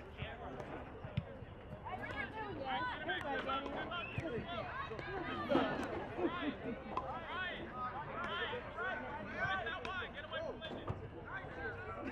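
Indistinct chatter of many overlapping voices at a soccer game, people talking and calling out, with a few short knocks scattered through.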